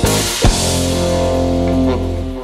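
Rock music ending: a last drum hit about half a second in, then the band's full chord held ringing.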